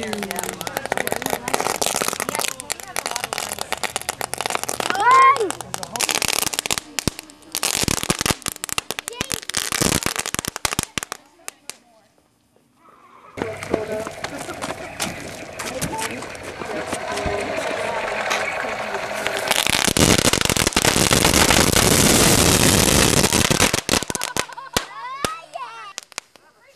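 Fireworks going off in a burning fort: about ten seconds of rapid crackling pops, a brief lull, then a steady hiss that builds loud and cuts off near the end.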